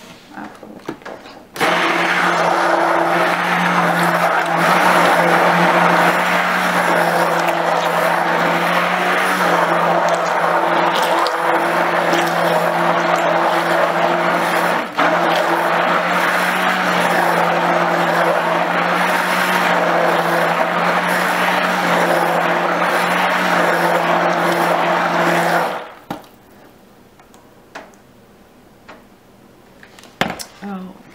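Stick blender running in cold process soap batter, mixing in colorant: a steady motor hum that starts about two seconds in, breaks off for a moment about halfway, and stops a few seconds before the end.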